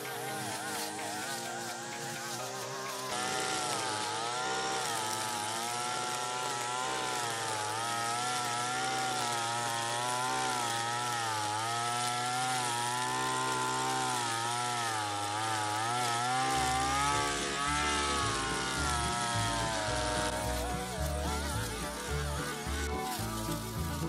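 Two-stroke brush cutter engine running at speed with a high whine, its pitch wavering up and down as it cuts grass and weeds.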